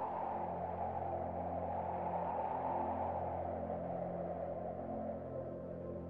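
Ambient sound-design drone: steady low held tones under a rushing, wind-like noise that slowly sinks in pitch and fades a little toward the end.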